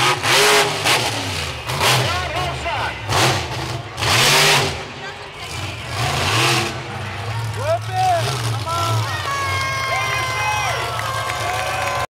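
Monster truck engine revving in repeated surges, the loudest about four seconds in, with crowd voices shouting close by.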